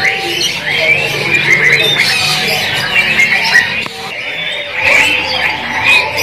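Many caged songbirds chirping and calling over one another in a dense, continuous chatter of short squeaky notes.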